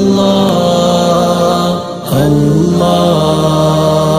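Background music: an Arabic nasheed, a voice chanting long held notes, with a short break about two seconds in before the next phrase rises in.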